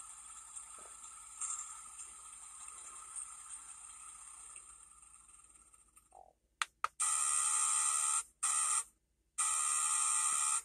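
Terra by Battat T-Rex Transport toy truck's sound chip playing electronic truck sound effects through its small speaker. A noisy effect fades away over the first five seconds. About six and a half seconds in, two short blips are followed by a run of harsh electronic tones: a long one, a short one, then another long one.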